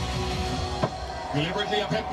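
Background music from a cricket highlights video, with a commentator's voice coming in during the second half and a single sharp click a little under a second in.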